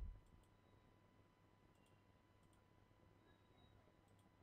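Near silence with a handful of faint computer mouse clicks, scattered and irregular, over a low steady room hum.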